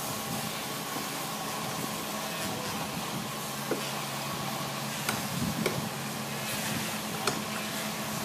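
Steady noisy outdoor background with a low hum of distant machinery running underneath, broken by a few short sharp knocks in the second half.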